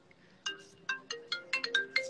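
A short electronic tune of quick, bright bell-like notes, about six a second, like a phone ringtone, playing at moderate level.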